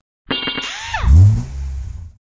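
Logo sound effect: a burst of layered tones with falling sweeps starting a quarter second in, then a loud, low revving-engine rumble that is loudest about a second in.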